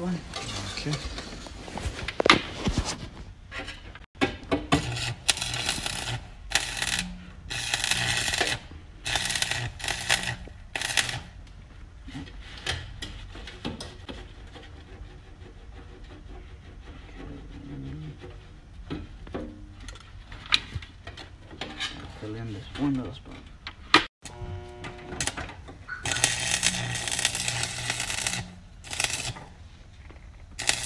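Stick welder arc crackling on the sheet-steel floor pan in a string of short bursts of about a second each, then a longer run of about three seconds near the end, as the pan is tack- and plug-welded in.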